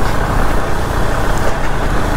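Steady wind rush and road noise from a moving motorcycle, picked up by a camera mounted on the bike, with the engine running underneath.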